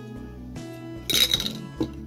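Background music, with a brief clinking clatter about a second in and a single click just before the end, as a colour pencil is picked up from among the art supplies.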